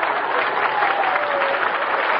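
Live studio audience applauding and laughing at a gag, heard on a narrow-band 1940s radio broadcast recording.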